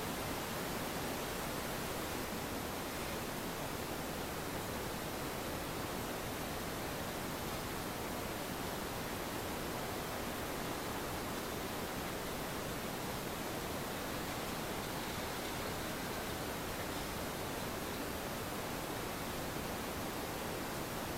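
Steady, even hiss of background noise with no distinct events, the recording's noise floor and open-air ambience, with a faint high steady whine.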